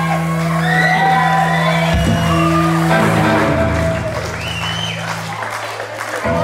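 Live rock band holding a sustained chord on keyboard and bass, with voices shouting and whooping over it. The held low notes drop out near the end.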